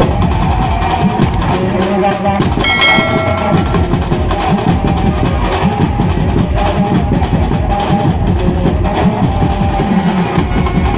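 Benjo band music played loud outdoors: steady drumming with crowd voices mixed in, and a short held pitched note about three seconds in.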